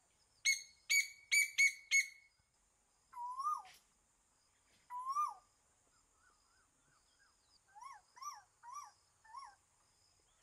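Birds calling over a steady high hiss. Five sharp chirps come in quick succession in the first two seconds, then a series of rising-and-falling whistled calls.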